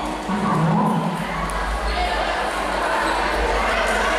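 A man speaking into a handheld microphone through a public-address system, with a steady low hum underneath.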